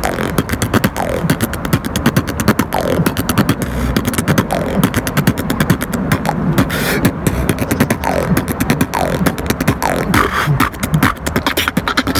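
Solo beatboxing: fast, steady rhythmic percussion made with the mouth, dense clicks over low thumps, with a short falling pitched sweep about once a second.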